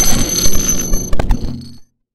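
End of an electronic outro sting: bright, steady high ringing tones over a low sustained bed, with a few short glitchy stutters a little past the middle, then a fade that cuts off just before the end.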